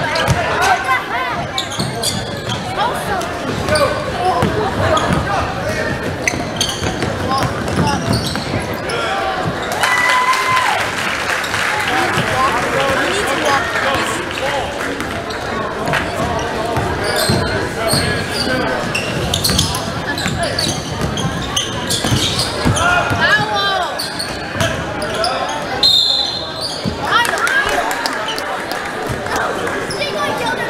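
Basketball game in a reverberant school gym: the ball bouncing on the hardwood court and sneakers moving amid spectators' chatter and shouts. A short high whistle sounds near the end as play stops.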